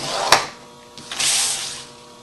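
A sharp click, then a scratchy stroke lasting under a second as a scoring tool is drawn along a score line in a sheet of designer paper.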